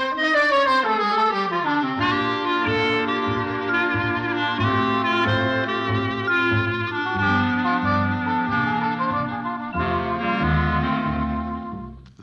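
Orchestral musical bridge from a 1940s radio drama, led by brass and reeds: an opening phrase swells up and falls back, then a run of held chords, and it cuts off just before narration resumes.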